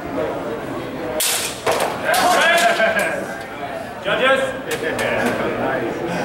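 Longsword blades striking with a sharp crack about a second in, followed by raised voices shouting and a few more short, sharp knocks.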